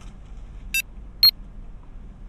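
Tamagotchi virtual pet giving two short electronic beeps about half a second apart as its buttons are pressed to discipline it; the second beep is louder.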